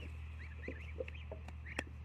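Birds chirping faintly in short high calls over a low steady hum, with a single sharp click near the end.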